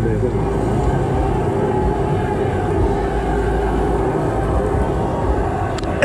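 Steady low background rumble and din with faint voices. A man speaking Thai is heard briefly at the start.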